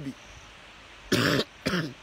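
A man coughs once, a short, harsh burst about a second in, followed by a brief voiced sound.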